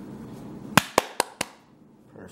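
Four sharp clicks or knocks in quick succession, about a fifth of a second apart, the first loudest and the rest fading.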